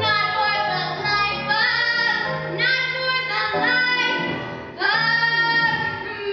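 A teenage girl singing a musical-theatre song solo, in sung phrases with a held note near the end, over a low accompaniment.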